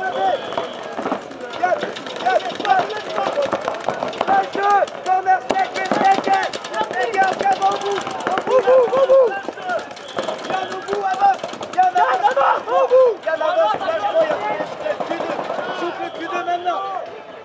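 Paintball markers firing in rapid strings of shots, densest about five to seven seconds in, under continual shouting from several voices.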